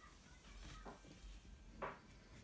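Very faint felt-tip marker strokes on paper while colouring, with a brief soft sound near the end.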